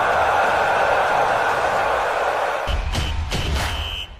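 Intro music with a steady crowd-cheering effect. About two and a half seconds in, it gives way to heavy, deep bass hits and a high ringing tone.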